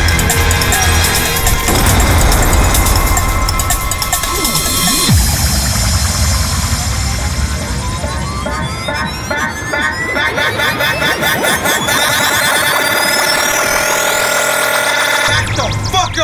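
Dubstep track with heavy bass and drums. About five seconds in, the low end drops away and a rising synth sweep builds up, and the heavy bass comes back just before the end.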